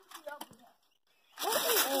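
Talking breaks off, a few faint soft sounds follow, then about a second of dead silence before a voice starts speaking again.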